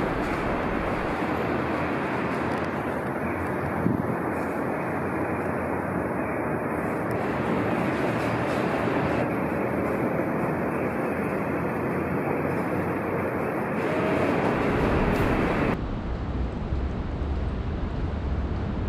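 Steady, even roar of city street traffic noise. It starts suddenly and shifts to a quieter, different mix about 16 seconds in.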